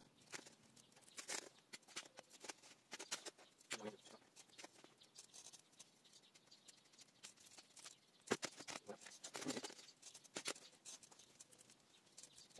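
Potting soil being worked by hand and with a metal hand trowel in a plastic pot: faint, irregular scratching and rustling, with a sharper click about eight seconds in.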